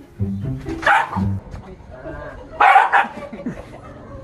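Dog barking in alarm at a stuffed toy tiger: a short bark about a second in, then two sharp, loud barks close together near three seconds, over background music.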